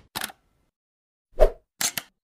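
Logo-animation sound effects: a brief faint hit right at the start, a louder short hit with a deep low end about a second and a half in, then a quick pair of clicks near the end, each cut off short.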